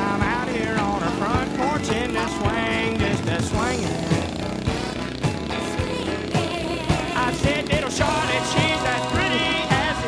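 Country song recording playing: a full band with a bending melody line over a steady beat.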